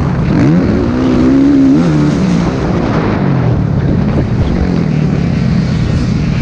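Motocross bike engine heard from a camera mounted on the bike, revving up about half a second in, holding high revs, then dropping back near two seconds in and running at lower revs, over a steady rush of noise.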